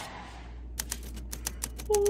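A quick run of typewriter key clicks, about ten in a second, over a low steady hum: a typing sound effect as a caption is typed on. Right at the end a person begins a yawn, a loud voice sliding down in pitch.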